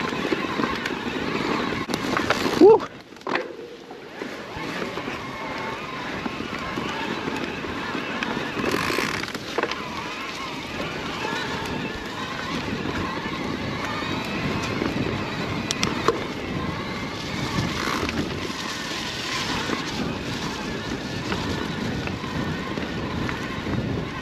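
Cube Stereo Hybrid 160 SL e-mountain bike descending a dirt forest trail: a continuous rumble and rattle of knobby tyres over soil, roots and leaves, with scattered sharp clicks and knocks from the bike. There is a brief loud peak about three seconds in, followed by a short lull.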